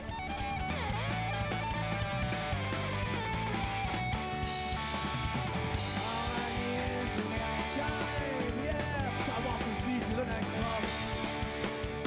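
Live rock band playing, with strummed and electric guitars to the fore over a steady bass and drum backing.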